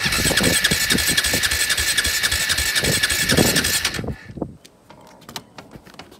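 2009 KTM 450 SX quad's electric starter cranking the single-cylinder engine with the choke on for about four seconds, without it firing because the fuel tap is shut. The cranking stops abruptly, followed by a few faint clicks.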